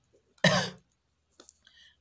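A man's single short cough about half a second in, sudden and loud, followed by a couple of faint clicks near the end.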